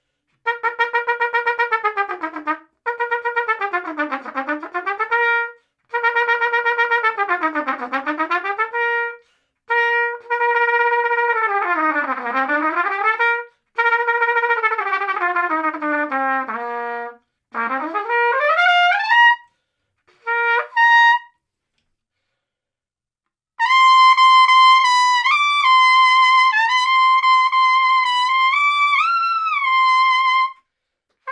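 Trumpet played through a plastic Brand Scream mouthpiece: several lip slurs stepping down through the harmonics and back up again, then glissandos rising into the high register. Near the end comes a sustained high phrase around high C, bending between notes.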